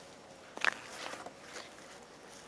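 Footsteps on dry, burnt leaf litter and twigs, with one sharp crunch a little after half a second in and a few lighter rustles after it.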